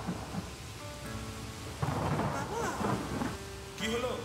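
Thunder rumbling over steady rain, with a sudden loud thunderclap about two seconds in.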